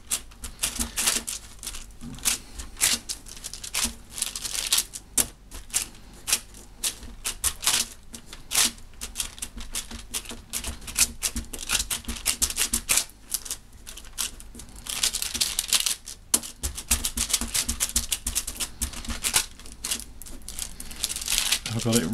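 Rapid, irregular clicks, taps and crackles of fingers pressing and smoothing a sheet of black epoxy putty flat on paper over a wooden table.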